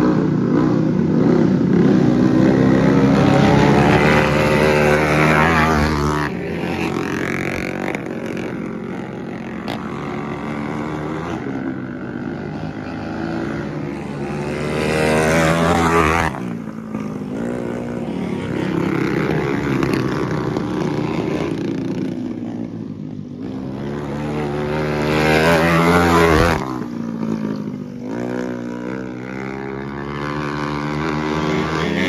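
Dirt-track go-kart engines racing, their pitch rising and falling as the karts lap. The sound peaks when karts pass close, about halfway through and again near the end.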